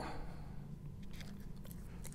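Faint rustling and light scraping of a plastic quilting template and fusible interfacing being positioned and smoothed by hand on a cutting mat, with a few small ticks.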